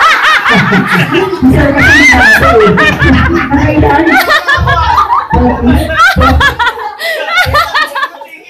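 A room of children and adults laughing and calling out loudly together.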